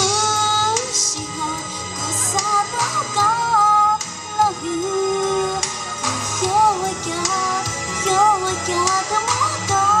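A woman singing a melody through a handheld microphone over recorded backing music, with long held notes that waver in pitch.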